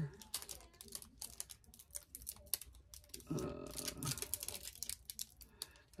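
Irregular quick light clicks and taps from long fingernails knocking on nail products and tools during a manicure, with a short spoken 'uh' about three seconds in.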